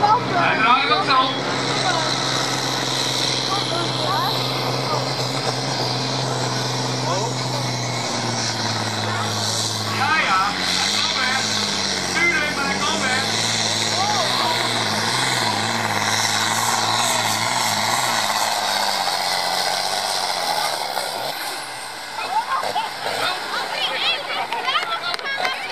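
Farm tractor's diesel engine under full load, pulling a weight-transfer sled and running steadily at high revs. Its pitch steps down twice past the middle as it labours, wavers, and then dies away near the end as the pull finishes.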